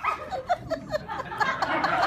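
A young actor imitating a small dog with a quick string of high yips, for a comic turn into a dog personality. Audience laughter swells near the end.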